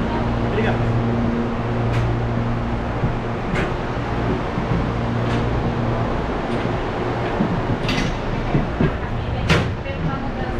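Interior of a stationary B40 electric train with a low steady hum from its onboard equipment that swells and fades. Background voices, and a few sharp knocks and clacks from doors and fittings, the loudest near the end.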